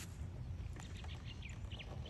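Birds chirping faintly in a run of short, quick calls, over a steady low rumble.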